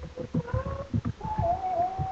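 A woman singing gospel, holding a long wordless note that steps up in pitch a little past a second in. Short low thumps run beneath it in the first half.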